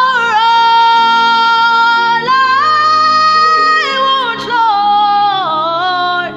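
A woman singing long, high held notes over keyboard and bass guitar accompaniment. She holds one note, steps up to a higher one about two seconds in, then comes down in steps toward the end.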